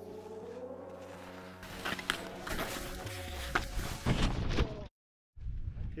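Soft background music with held tones, then skis scraping and chattering over hard, steep mogul snow with several sharp knocks, broken by a brief total dropout near the end.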